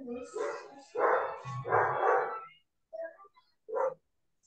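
A dog barking about five times in short bursts, with brief gaps between them.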